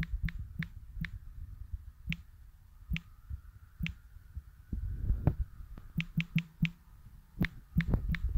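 Irregular clicks of typing on a smartphone's on-screen keyboard, single taps with pauses and a quick run of several taps near the end, over a low rumble.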